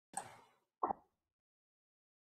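Two brief knocks less than a second apart, the second one shorter and duller.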